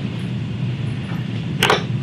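Steady low background hum under a faint hiss, broken by a short vocal sound near the end.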